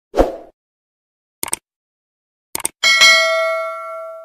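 Edited sound effects: a short thud, two quick bursts of clicks, then a bell ding about three seconds in that rings out slowly.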